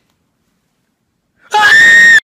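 Near silence, then about one and a half seconds in a young man lets out a sudden loud, high-pitched scream that rises at its start and is held.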